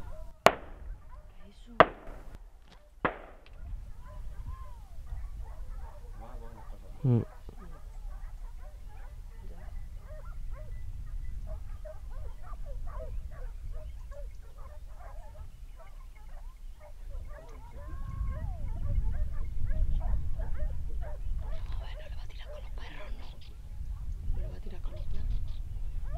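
Three hunting-rifle shots in quick succession, a little over a second apart, in the first three seconds. They are followed by a pack of hunting hounds giving tongue in the chase, with many short yelps and barks that grow louder near the end.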